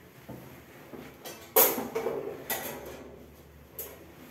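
A few sharp knocks and clatters echoing in a small tiled room. The loudest comes about one and a half seconds in, with two lighter ones after it.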